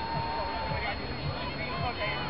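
Overlapping voices of spectators shouting and chattering as they cheer on the runners, over a steady faint high-pitched whine.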